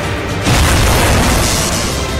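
Intro theme music with a loud cinematic boom hit about half a second in, which rings on for about a second before easing back into the music.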